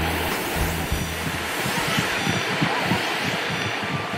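Steady rushing noise of breaking surf, with low background music that drops out about a second and a half in.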